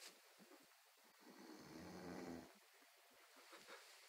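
A sleeping person snoring faintly: one low snore lasting about a second, near the middle.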